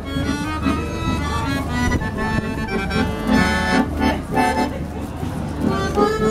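Piano accordion played by a street busker: a tune of sustained notes and chords over a steady bass.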